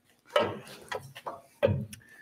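A few clunks and knocks as the jointer's cutterhead guard is handled and pulled aside. The loudest come about a third of a second in and again near the end.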